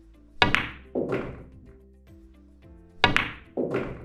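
Pool shot heard twice: the cue tip strikes the cue ball, the cue ball clicks sharply into the object ball a split second later, and about half a second after that the ball drops into the pocket with a thunk. The same sequence repeats about two and a half seconds later, over background music with a steady beat.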